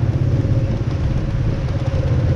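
Motorbike engine running steadily under way, heard from on the bike, with the noise of motorbike traffic around it.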